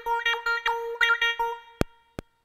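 Synthesizer keyboard playing a short run of quickly restruck notes on one steady pitch, with small pitch blips between them. It dies away about one and a half seconds in, followed by a single sharp click near the end.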